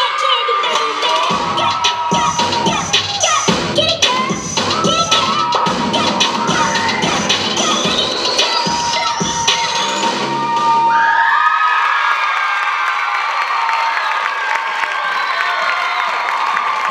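Rap dance track with a beat, under an audience cheering and shrieking; the music stops about ten seconds in and the cheering and whoops carry on.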